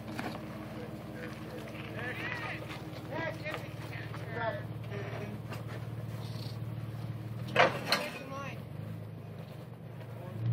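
Jeep Wrangler's engine running low and steady as it crawls over rock, with people talking in the background. A brief loud voice cuts in about eight seconds in.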